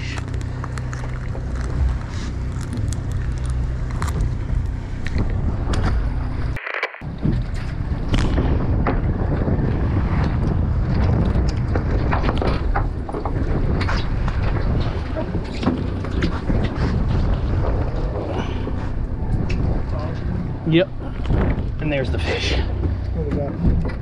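Charter fishing boat's engine running with a steady low hum. After a cut, wind and sea noise against the hull, with scattered small knocks.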